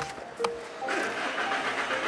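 Background music over a car's starter cranking the engine, which does not catch: the car won't start.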